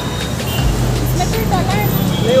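A steady low rumble that grows louder about half a second in, with people talking over it from about a second in.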